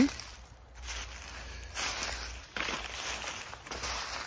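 Footsteps on a path of dry fallen bamboo leaves, several uneven steps in the leaf litter.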